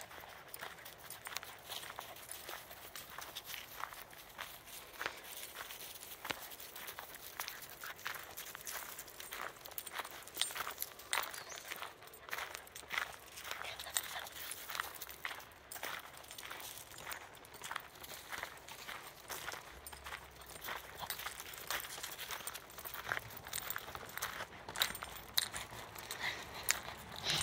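Footsteps on a gravel path at a steady walking pace, a run of short, regular crunches.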